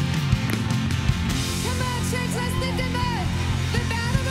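Live worship band playing a rock-style song with electric guitars, drums and keyboards, steady drum hits throughout; a vocalist comes in singing the melody about a second and a half in.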